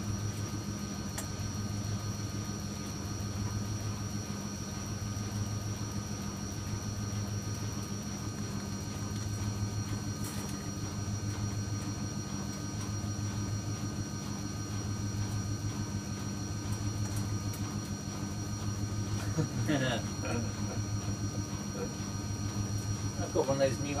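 Zanussi Washcraft EW800 front-loading washing machine running late in its Cotton 40 cycle, before the spin: a steady low hum that swells slightly about every second and a half.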